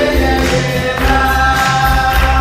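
Gospel worship singing: voices holding long notes together over a sustained bass line and a steady beat.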